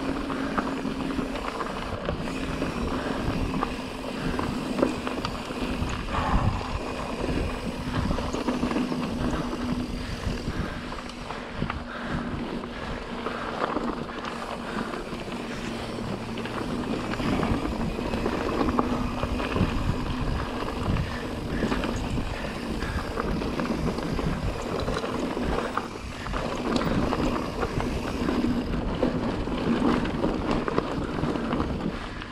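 Mountain bike (a Pivot Trail 429) rolling over a rocky dirt singletrack: tyres crunching on gravel and rock, with frequent rattles and knocks from the bike over bumps, and wind on the microphone.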